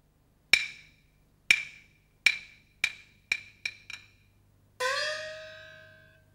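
Peking opera percussion: seven sharp, ringing wooden strikes that come faster and faster, then a gong struck near the end, its pitch rising as it rings.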